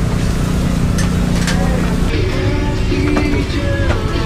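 Busy open-air market ambience: dense background noise and distant voices over a steady low hum that stops about halfway, with music coming in near the end.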